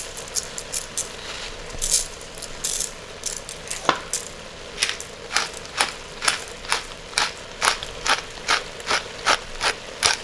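Salt sprinkled onto diced raw potatoes in a stainless pot in a few short hissy bursts, a single knock about four seconds in, then a wooden pepper mill being ground over the pot: a steady run of dry grinding clicks, about two or three a second.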